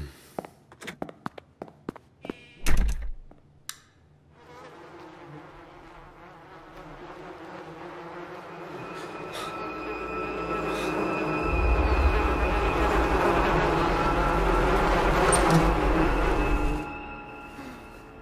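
A few soft knocks and a heavy thump, then a buzzing that swells steadily for about ten seconds, with high ringing tones over it and a low rumble under it once it peaks, before it cuts off abruptly.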